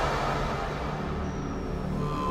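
Electronic psychill music in a sparse, dark break: low sustained bass tones with little above them, and a faint thin high tone near the end.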